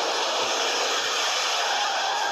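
A steady rushing noise, with a faint held tone joining about halfway through.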